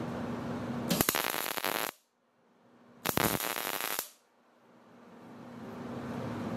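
MIG welder striking two short tack welds, each a crackling sizzle just under a second long, about one and three seconds in, joining expanded steel mesh to a steel tube brush guard.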